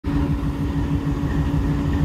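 Diesel locomotive engine running, a steady low throbbing rumble with a steady hum over it.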